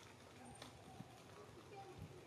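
Near silence: faint outdoor ambience with a few soft clicks.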